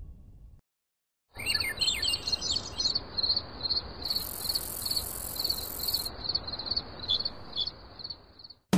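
The tail of a song fades out, then after a short silence birds chirp, quick high calls repeated about two or three times a second over a steady background hiss.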